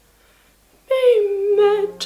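A woman singing: a near-silent breath pause for about the first second, then she starts a new phrase on a held note that slides down, and a low steady note comes in beneath her a little past halfway.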